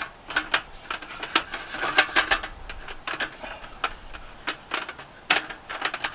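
Aluminium slats of a Rio Gear roll-up camp tabletop clicking and rattling against each other and the frame as they are pressed and hooked into place: a string of irregular sharp clicks, busiest about two seconds in.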